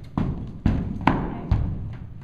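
A horse's hooves stepping onto a horse trailer's ramp and floor: four hollow thuds about half a second apart, each with a short boom.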